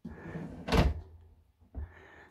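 A kitchen drawer being pushed shut: a short sliding rumble, then one sharp thunk a little under a second in as it closes, and a fainter knock near the end.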